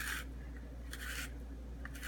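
Handheld spiral vegetable slicer being twisted through a zucchini, its blade shaving off thin noodles in three short scraping strokes about a second apart.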